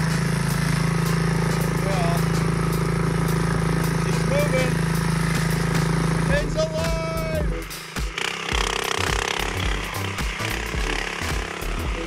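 Predator 212 single-cylinder four-stroke engine on a mini ATV running with a steady hum, then turning choppy and uneven from about seven or eight seconds in as the quad moves across grass.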